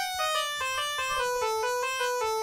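Keyboard playing a run of single clean notes, about four a second, stepping gradually down in pitch.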